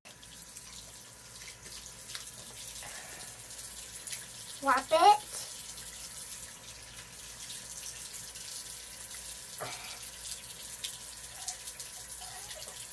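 Bathroom sink faucet running a thin, steady stream of water into the basin while soapy hands are washed under it. A short voice sounds once, a little under five seconds in.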